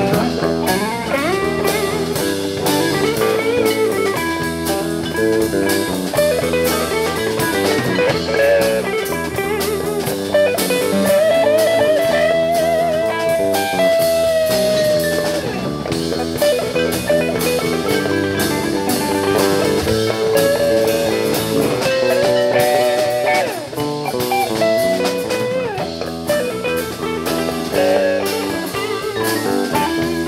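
Live band playing an instrumental passage on two electric guitars, electric bass and drum kit. A long held, bending guitar note stands out near the middle.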